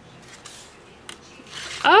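Faint rustle of card stock being handled, with a small tick about a second in; near the end a woman lets out a loud, rising exclamation, 'Ah!'.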